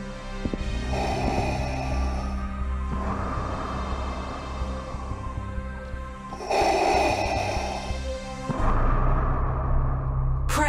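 Background music over a steady low drone, with Darth Vader's mechanical respirator breathing: one breath about a second in and a louder one about six and a half seconds in.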